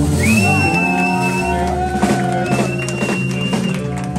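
Live blues band jamming: an electric guitar plays a lead line of long notes that bend upward and then hold, over electric bass and the band's backing, in a reverberant room.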